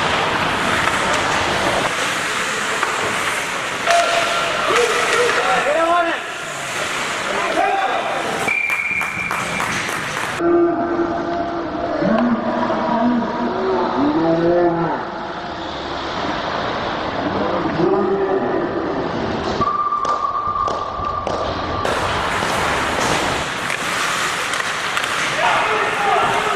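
Ice hockey rink game audio: spectators and players shouting in long, drawn-out calls, with a few sharp knocks of sticks or puck. Twice a short steady whistle-like tone sounds, once about nine seconds in and once around twenty seconds in.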